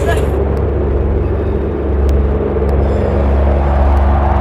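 A car engine running, heard as a loud, steady low rumble.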